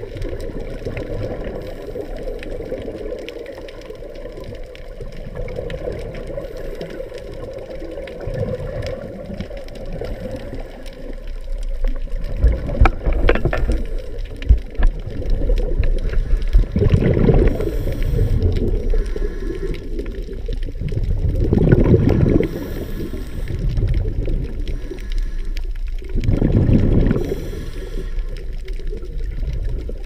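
Muffled underwater noise heard through a camera's waterproof housing, with louder bursts of scuba regulator exhaust bubbles about every four to five seconds in the second half.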